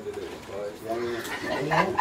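A bird calling, with voices in the room behind it.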